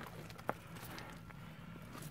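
Faint scuffs and small ticks on rock, with one sharp click about half a second in, over a quiet background.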